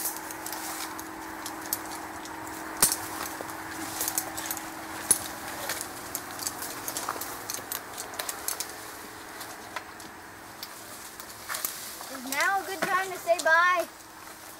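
Scattered sharp clicks and knocks from a tree climber's rope, harness gear and bark as he climbs, with a faint steady hum underneath. A person's voice comes in near the end.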